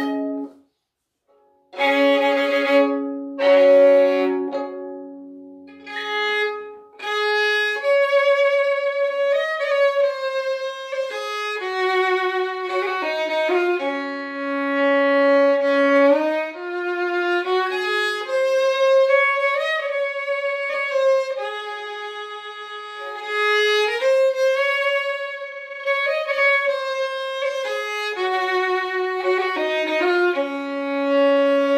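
Solo fiddle playing a slow Irish song air, long held bowed notes joined by slides and light ornaments. After a short pause the bowing begins about two seconds in.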